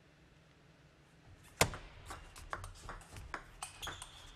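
Table tennis rally: one sharp crack of a bat hitting the ball about one and a half seconds in, then a quick run of lighter clicks, about three or four a second, as the ball bounces on the table and meets the paddles.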